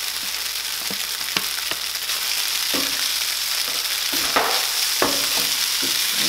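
Tofu scramble with vegetables sizzling in a frying pan as fresh spinach is tipped in and stirred through with a wooden spatula. A steady sizzle, with about six sharp knocks from the stirring.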